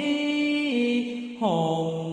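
A single voice chanting a Vietnamese sutra in long, drawn-out held notes. The pitch steps down a little and then glides lower about one and a half seconds in.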